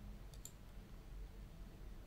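Faint computer mouse clicks, two quick ticks about half a second in, over quiet room tone.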